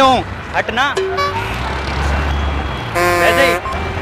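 A vehicle horn honks once, loudly, for about half a second around three seconds in, over the low rumble of engines in street traffic.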